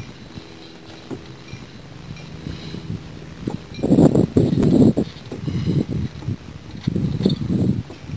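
A small boat under way on the water, with a steady low motor hum. Irregular rough bursts of noise set in about four seconds in and again near the end.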